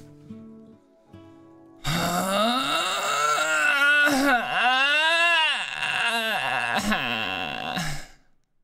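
A man's long, drawn-out groan while stretching, starting about two seconds in. It runs for about six seconds, its pitch sliding slowly up and down without words.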